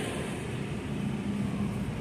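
Steady supermarket background hum and hiss, with a constant low tone beside a refrigerated meat display case.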